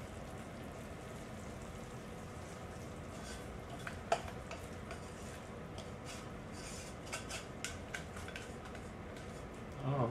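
Faint scraping and light clicks of a spatula against a metal saucepan as hot toffee is poured and scraped out, over a steady low background hiss. The sharpest click comes about four seconds in, with a few more between seven and eight seconds in.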